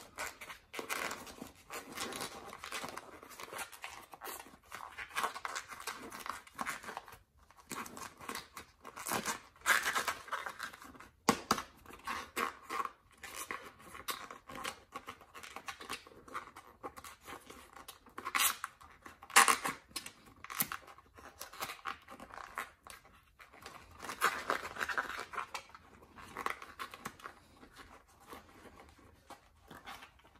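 A Pro-Line Hyrax 1.9-inch rubber RC crawler tire and its dual-stage foam insert being squeezed and worked together by hand: irregular rubbing and scraping of rubber and foam, with a few louder scrapes about ten seconds in, near twenty seconds and near twenty-five seconds.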